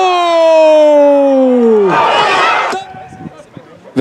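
A male sports commentator's long drawn-out celebratory shout: one held vowel that slides slowly down in pitch and breaks off about two seconds in. A short noisy burst follows, then a quieter stretch.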